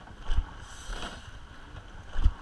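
Sweep-oar rowing shell under way at speed: a steady rush of water and wind over the microphone, with one low knock about a third of a second in that falls in time with the stroke.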